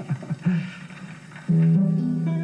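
Acoustic guitar strummed into a chord about one and a half seconds in, the chord ringing on to open the song, after a brief bit of voice.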